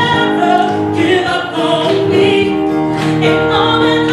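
Gospel vocal group of female and male voices singing together in harmony, held notes through handheld microphones over the church's sound system.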